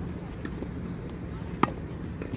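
Tennis racket striking the ball on a one-handed backhand: a single sharp pop about one and a half seconds in.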